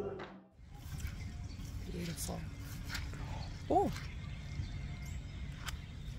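Outdoor ambience with a steady low hiss, and one short rising-and-falling pitched call about four seconds in. Choir music cuts off right at the start.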